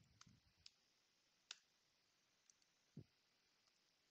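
Near silence with a few faint, scattered clicks of computer keyboard keys being typed.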